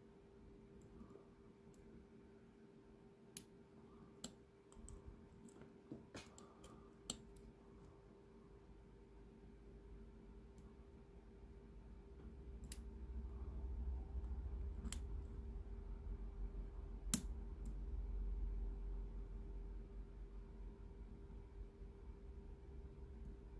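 Faint, scattered clicks of a lock pick working the pin stacks inside a brass padlock's cylinder during single-pin picking, with a few sharper ticks standing out, the loudest about 17 seconds in. A low rumble swells through the second half.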